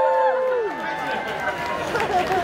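Audience cheering and shouting as the band stops, several voices holding long calls that trail off about halfway through, leaving a murmur of crowd noise.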